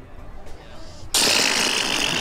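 A loud, rattling raspberry blown with the tongue stuck out, starting suddenly about a second in and held steadily.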